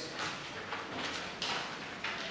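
Playing cards being dealt onto a wooden table: a run of light, quick slaps and flicks as the cards land.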